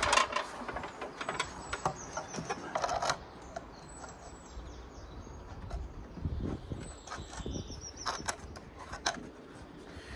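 Scattered knocks, taps and scrapes of handling as a wooden bird box is held up and shifted against a brick wall from a stepladder, with faint birds chirping in the background.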